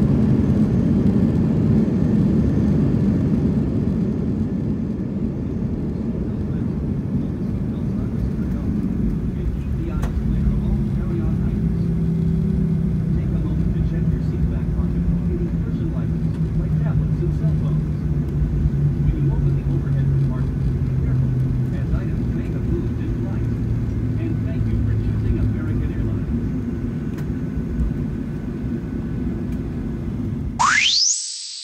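Boeing 737-900 cabin noise during the landing rollout. A heavy rumble from the engines and wheels is loudest at first and eases after about ten seconds into a steady drone, with engine tones that slowly fall in pitch as the jet slows.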